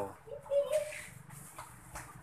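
A brief animal call: one short held note about half a second in.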